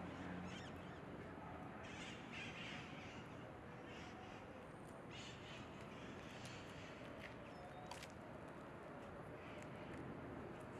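Faint outdoor ambience with a few short bird calls, heard about two, four and five seconds in.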